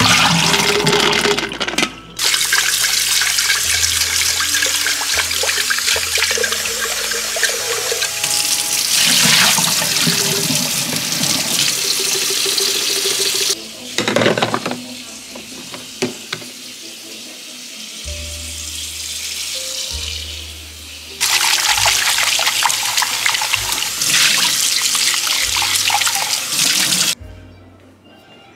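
Kitchen tap water running hard into a stainless steel sink while a glass coffee carafe is emptied and rinsed, in two long stretches of splashing with a shorter burst and a quieter gap between them.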